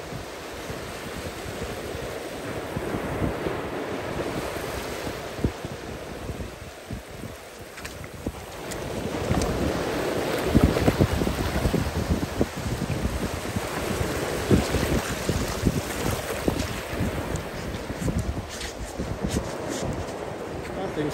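Surf breaking and washing up the beach, with wind on the microphone. About halfway through it grows louder, with water splashing as a hooked ray is dragged through the shallows onto the sand.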